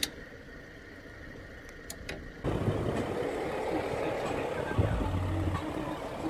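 Faint quiet with a few light clicks, then about two and a half seconds in a louder steady noise of an SUV's engine running, with a low rumble that swells twice.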